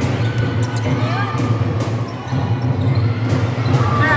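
A basketball dribbled on an indoor gym court: a few separate bounces echoing in the large hall.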